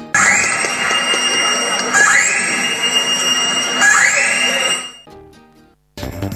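A recorded soundtrack effect played loud for a stage mime: a rising whine that climbs and then holds high, sounding three times about two seconds apart over a dense noisy bed. It fades out about five seconds in to a brief silence, and a new piece of music begins at the very end.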